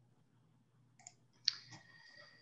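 Two faint clicks about half a second apart, the second sharper and briefly ringing, over a low steady hum.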